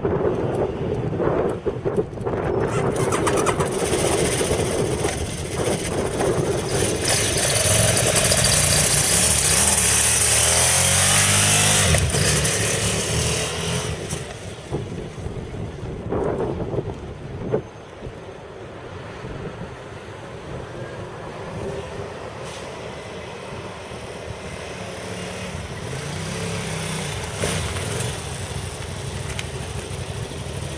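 KTM 990 Supermoto's V-twin engine pulling away and accelerating through the gears, loudest as it revs up and then dropping off. It fades to a low distant drone as the bike rides away, then grows louder again as it comes back.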